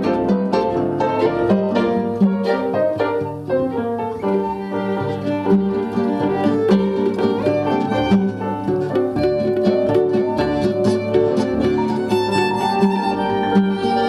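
Small acoustic folk-style ensemble playing an instrumental passage with no singing: violin over plucked mandolin and acoustic guitar, with piano and accordion.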